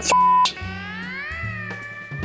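A short, loud single-pitch censor bleep about a second's fraction long, cutting off the end of a swear word. Background music with sliding, gliding guitar notes follows.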